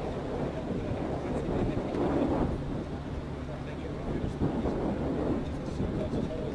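Wind buffeting the microphone over a steady low outdoor rumble, with indistinct voices rising briefly about two seconds in and again near four and a half seconds.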